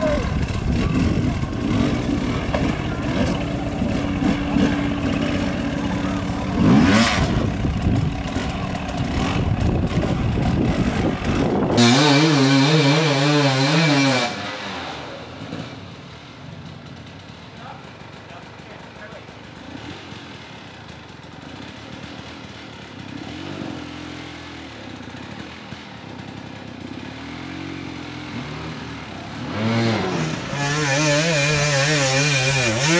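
Off-road dirt bike engines revving and bogging as riders work over obstacles, with voices mixed in during the first twelve seconds. About twelve seconds in, a close bike revs hard for two seconds with its pitch wavering up and down. After that it is quieter, with a more distant bike revving in short bursts and a close rev again at the very end.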